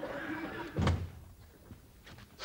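A door shut with a single heavy thump about a second in.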